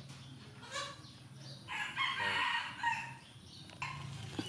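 A rooster crowing once, a long call starting a little under two seconds in and lasting just over a second.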